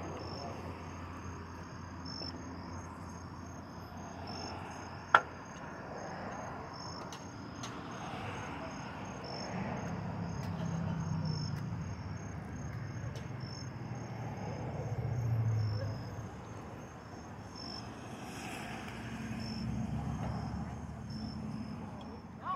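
Night insects, most likely crickets, chirping in a steady high-pitched pulsing chorus. A single sharp click comes about five seconds in, and a faint low rumble swells and fades in the middle.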